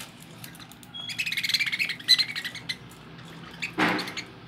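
Budgerigars chattering: a rapid run of high chirps for about a second, then a short loud burst near the end.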